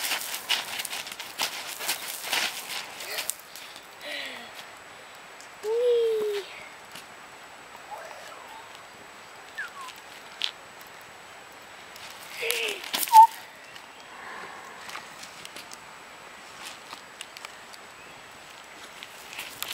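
A child's feet scuffing and stomping on gravel, with a cough at the start and a few short vocal sounds from the child, the loudest about two-thirds of the way through.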